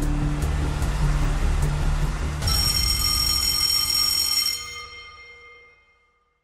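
Game-show countdown music with a low pulsing beat. About two and a half seconds in, a bright ringing time-up chime sounds and fades away over the next few seconds, signalling that the answer time has run out.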